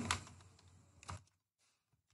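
Computer keyboard keys being typed: a few faint key clicks, the clearest about halfway through.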